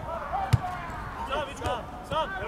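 A football kicked once, a sharp thud about half a second in, with players shouting on the pitch.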